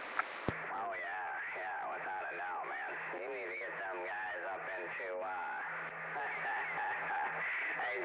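A voice received over a CB radio on lower sideband, thin and quieter than the transmission just before it, with a click about half a second in.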